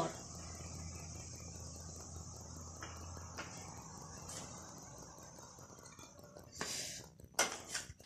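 Quiet background with a faint low hum and a thin steady high hiss, then two short rustling noises near the end.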